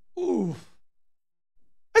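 A man's short wordless vocal sound, gliding down in pitch and lasting about half a second, near the start.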